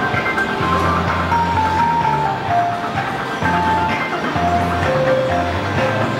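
Music: a simple electronic melody of short held notes stepping up and down over a bass line.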